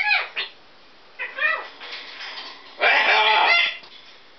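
Pet parrot calling three times: a short call at the start, a weaker one about a second later, and a longer, louder call near the end.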